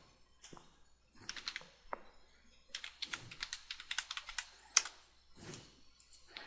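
Computer keyboard typing: a few keystrokes about a second in, then a quick run of keystrokes for about two seconds that ends with one sharper key press.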